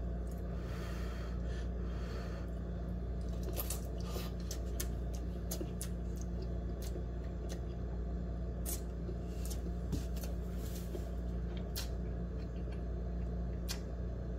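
Quiet mouth sounds of a man eating instant cup noodles, small scattered clicks and smacks as he chews, over a steady low hum.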